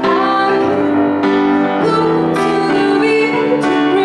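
A young woman singing a slow pop ballad through a microphone, accompanied by grand piano chords struck on a steady pulse.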